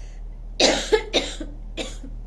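A woman coughing into her fist: three quick coughs starting about half a second in, then a fourth, weaker one near the end.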